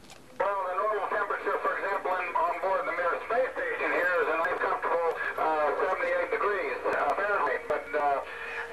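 A man's voice answering over a ham radio link from the Mir space station, starting about half a second in, thin and narrow-band like a radio loudspeaker.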